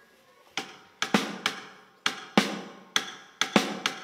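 A small drum struck with sticks: about ten sharp hits in an uneven rhythm, starting about half a second in.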